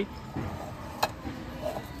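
A single sharp click about a second in, a plastic tumbler knocking against another cup or the shelf as the cups are handled, over low steady shop background noise.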